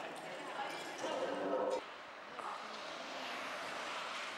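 Faint voices at a restaurant table over room noise; about two seconds in the sound cuts abruptly to a quieter, steady background.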